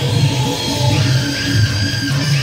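Live stage-band music for a folk theatre dance: a steady drum beat under a held, sustained melody line.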